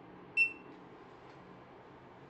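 A single short, high beep from an elevator car's key-card reader as a hotel room card key is touched to it: the reader accepting the card and unlocking the guest floors. A faint, low, steady hum runs underneath.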